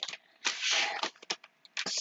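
Foil toy blind bag crinkling briefly as it is handled, then a few light taps as the bag and a small plastic figure are set down on the table.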